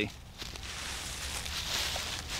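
Faint rustling and shuffling in dry leaf litter as a person moves about and bends over, with no distinct knocks.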